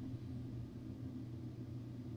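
A pause in speech: quiet room tone, a steady low hum with faint hiss picked up by the studio microphone.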